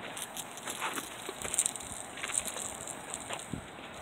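Quiet outdoor background noise with scattered light clicks and taps.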